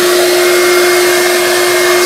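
Shop vac running steadily, pulling air through a cyclone dust separator and hose: a constant pitched motor hum over a loud rush of air.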